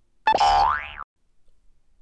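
Cartoon "boing" comedy sound effect: a single springy tone lasting under a second, its pitch gliding upward before it cuts off sharply.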